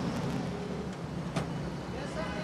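Road traffic noise: vehicle engines running with a steady low hum, and a single sharp click about one and a half seconds in.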